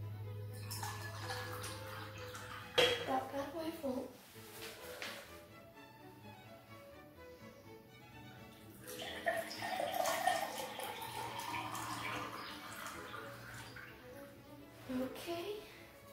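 Water poured from a kettle into a drinking glass, splashing as it goes, with a tone that rises in pitch as the glass fills during the second half.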